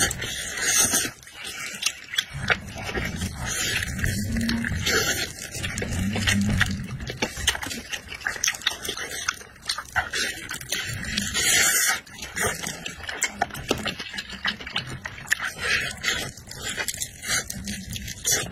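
Close-miked eating sounds: wet chewing, sucking and smacking on a chicken drumstick, with many sharp mouth clicks and repeated hissy slurps.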